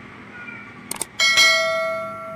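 Subscribe-button animation sound effect: a quick double click, then a bright bell ding a little past a second in that rings on and slowly fades.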